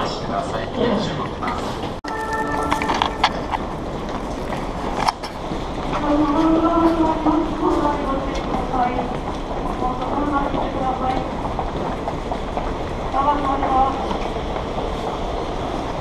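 Busy subway station platform: a continuous din of a train at the platform and a crowd, with a short electronic chime about two seconds in and a voice over the station announcement system several times.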